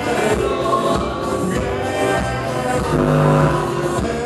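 A live band plays a song with singing, with acoustic guitar, electric bass and drums, and a note is held about three seconds in.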